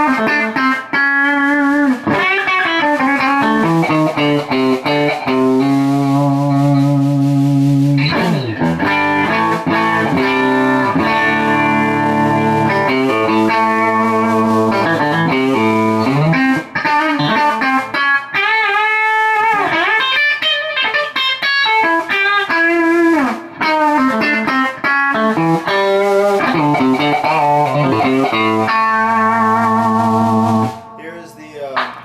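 Pine-body Telecaster-style electric guitar with Fender American Standard '52 pickups, played through a Fender Super Sonic 60 amp with a Celestion Vintage 30 speaker: a run of single-note licks and ringing held chords, with string bends about two-thirds of the way through.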